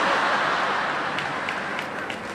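Audience applauding, a dense spread of clapping that eases off a little toward the end.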